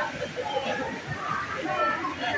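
Several people's voices talking and calling over one another, with no single clear speaker.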